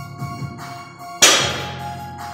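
A loaded barbell with rubber bumper plates set down on the rubber gym floor at the end of a deadlift rep, landing with one loud thud about a second in, over background music.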